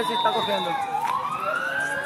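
A siren wailing: its pitch sags a little, then climbs steadily over about a second and a half, with faint voices underneath.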